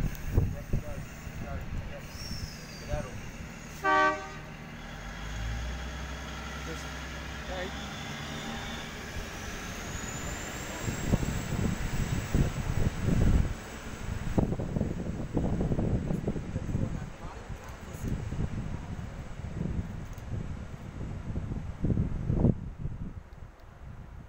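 NSW TrainLink Xplorer diesel railcar set pulling out of the station: a short horn toot about four seconds in, then its diesel engines rumbling as it powers away, with a rising whine as it gathers speed and uneven rumbling as it draws off.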